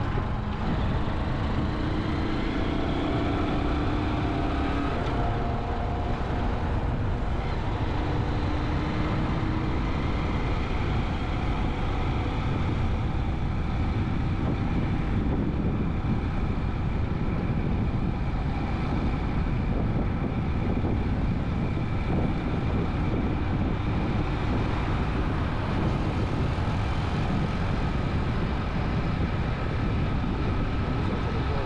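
A vehicle driving at steady speed: a constant rumble of engine, road and wind noise on the microphone, with a faint whining tone that rises a little during the first several seconds.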